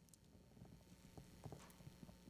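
Near silence: room tone with a few faint, short taps and knocks as a Bible is handled and set down on a wooden pulpit.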